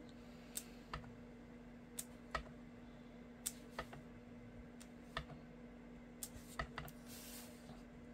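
Clear acrylic stamp block pressed down onto cardstock again and again, giving light, irregular clicks and taps, roughly one or two a second, as a small dot stamp is worked around the card's edge. A faint steady hum runs underneath.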